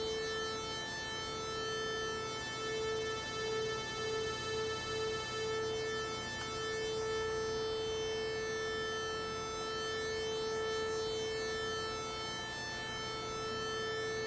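Two analog synthesizer oscillators of a Roland JX-3P with the Kiwi-3P upgrade, both sawtooth waves, sounding together as one steady buzzy tone at about 440 Hz. For a few seconds in the middle the tone pulses about twice a second: beating between the two slightly mistuned oscillators. It then holds steadier as oscillator 2 is tuned closer to oscillator 1.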